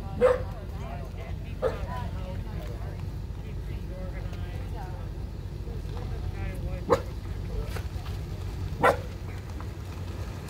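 A dog barking in short single barks, four times spread across the few seconds, over a steady low rumble and faint voices.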